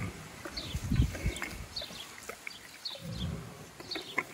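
A pig eating from a trough with its snout buried in the bowl: irregular chomping, snuffling and low grunts, loudest about a second in and again near three seconds.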